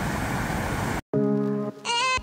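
Steady rush of river water pouring over a low dam for about a second, then a sudden brief dropout, and background music with held notes begins.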